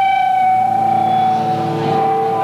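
Electric guitar amplifier feedback: one steady high tone ringing without a break, with fainter held tones under it.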